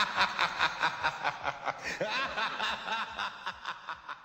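A person laughing, a rapid run of 'ha' bursts about five a second that tapers off and fades toward the end.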